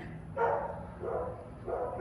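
A dog barking, three barks spread over about a second and a half.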